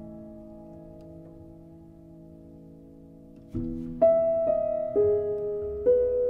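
Slow, gentle piano music from a film score: a held chord fades away over the first three and a half seconds, then a new chord comes in and single notes follow about once a second.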